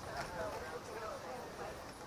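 Indistinct voices of people talking at a distance, too faint to make out words, with a few light clicks.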